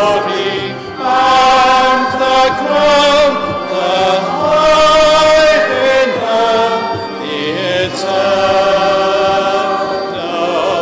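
Singing in slow chant, with long held notes that change pitch every second or so and run on without a break.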